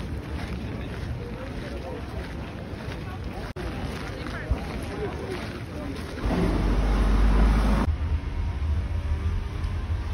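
Outdoor ambience of people talking in the background, with wind on the phone's microphone. A little past halfway a stronger wind buffet on the microphone lasts about a second and a half, then the sound cuts abruptly to a steady low rumble.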